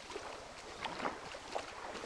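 Lakeshore ambience: small waves lapping at the sandy edge of the lake, with light wind on the microphone and a few soft irregular knocks.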